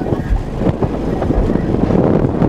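Bass from two 18-inch Ascendant Audio SMD subwoofers playing hard inside the truck, heard from outside beside the front tire as a loud, uneven low rumble with wind-like buffeting on the microphone.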